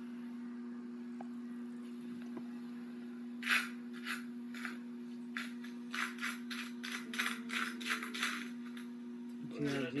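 A steady low hum, with a run of quick light clicks or taps starting about three and a half seconds in, irregular at roughly three a second.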